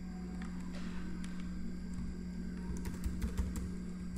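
Computer keyboard keys typed in a scattering of light clicks, over a steady low hum.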